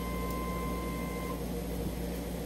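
Microm cryostat's keypad giving a steady electronic beep while an arrow button is held to move the chuck holder toward or away from the stage. The beep cuts off a little over a second in, leaving a low steady hum.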